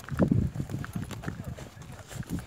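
Footsteps on loose stones and rock, a run of sharp knocks about three to four a second, with a brief burst of voices near the start.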